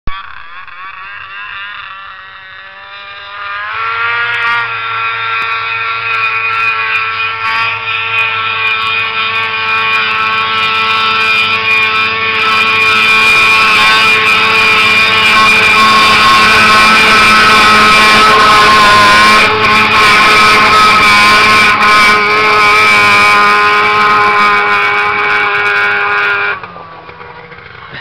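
A 2002 Ski-Doo MXZ-X snowmobile's two-stroke engine running at high revs while the sled skims across open water. Its pitch steps up about four seconds in, and the sound grows louder toward the middle, then drops off sharply near the end.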